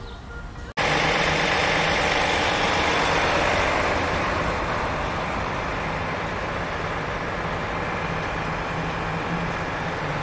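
Large vehicle's engine running close by: a loud steady drone with a constant low hum, starting abruptly just under a second in and easing slightly after about four seconds.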